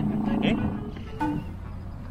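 Several people laughing together, dying away after about half a second into quieter background music.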